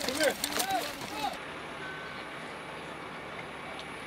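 Shouted men's voices that trail off after about a second, then a steady low outdoor background noise with one brief faint beep.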